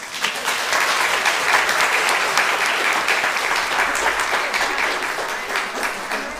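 Church congregation applauding: many people clapping at once, starting suddenly and thinning out near the end.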